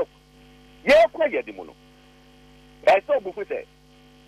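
Steady electrical mains hum, a low buzz held at several fixed pitches, running under the radio audio. Two short bursts of a man's speech come about a second in and again about three seconds in.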